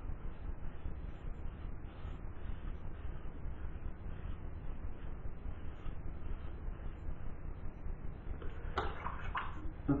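GEM Junior single-edge razor scraping through lathered stubble, a steady scratchy crackle of the blade cutting the hair.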